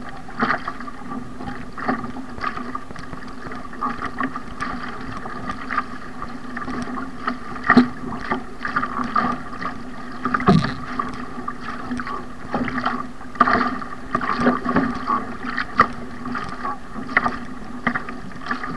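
An ocean ski paddled on choppy sea: the blades splash in and out with each stroke and water washes along the hull, as a run of irregular short splashes and knocks over a steady hum.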